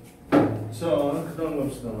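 A single sharp knock of something being set down on a wooden lectern, about a third of a second in, followed by a man's voice.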